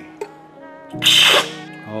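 One short, loud, airy slurp of brewed coffee sucked from a spoon about a second in, the taster drawing in air with the coffee to spray it across the palate. Background music plays throughout.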